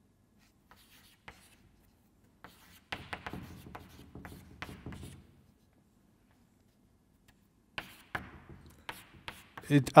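Chalk writing on a blackboard: short scraping strokes and taps in two spells, with a pause of about two seconds between them.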